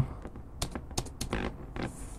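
Computer keyboard being typed on: a run of irregular key clicks.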